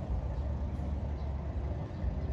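A steady low rumble of outdoor background noise, deep and unbroken, with small rapid swells in loudness.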